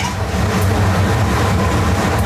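Creamed fresh tonnarelli being stirred with a metal utensil in an aluminium pan on a gas stove, over a steady low mechanical hum.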